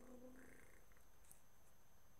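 Near silence. It is broken only by the tail of a low held voice-like tone that fades out about half a second in, and a faint click a little after a second.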